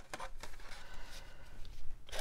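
Paper greeting cards rustling and lightly tapping as they are handled and drawn out of a cardboard box, a few soft strokes at irregular moments.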